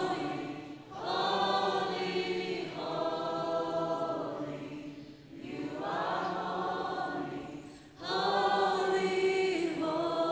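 Worship singers and congregation singing a slow song together in long held phrases, with short breaks between them, over a steady low sustained note.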